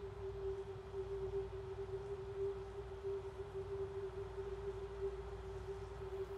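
A single steady tone held without change, a sustained drone in the soundtrack.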